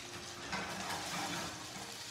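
Udon noodle cake frying in sesame oil in a hot skillet: a soft, steady sizzle.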